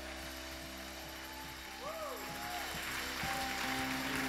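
Light applause, many hands clapping, as held keyboard notes of a finished worship song die away. A brief rising-and-falling vocal cheer comes about two seconds in.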